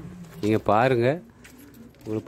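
A man's voice: one drawn-out, word-like syllable from about half a second to a second in, then a quieter stretch.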